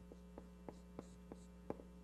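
Faint steady electrical mains hum, with a handful of light ticks and soft squeaks from a dry-erase marker writing on a whiteboard.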